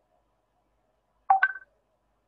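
A short electronic two-note chime, rising in pitch, about a third of a second long, of the kind a computer or call app plays as an alert.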